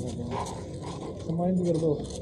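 Men talking, with a short spoken phrase near the end over background noise.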